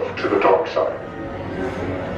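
Voices talking during the first second, over steady background music.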